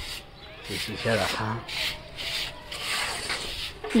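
Broom brushing a freshly laid brick wall in repeated short strokes, sweeping loose mortar off the joints. A brief voice-like sound comes about a second in.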